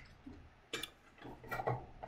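A few faint, sharp clicks in a quiet room, the loudest a little under a second in.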